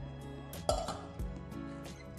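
Acoustic background music, with one sharp clink about two-thirds of a second in as a metal cake mould, turned upside down, comes down onto a glass plate.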